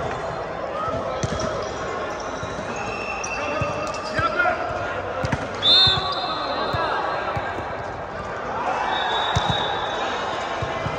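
Volleyball rally in a large, echoing hall: the ball thuds off players' arms and hands, players call out, and sneakers squeak on the court. The loudest squeak comes about six seconds in.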